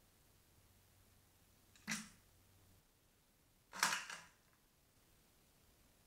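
Two short scratchy, clattering noises about two seconds apart, the second louder and longer, as mice arrive among and brush against the small plastic 3D printed mousetraps on the barn floor.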